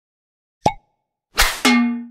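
Sound effects for an animated logo intro. A short pop comes about two-thirds of a second in, then a noisy hit and a ringing, chime-like stroke near the end that dies away.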